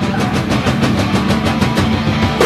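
Rock band playing live with amplified guitar and bass holding low notes under a fast, even run of short strokes, in an instrumental stretch without vocals.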